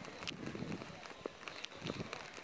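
Footsteps of someone walking on a wet paved walkway, a few sharp steps standing out over a steady outdoor hiss.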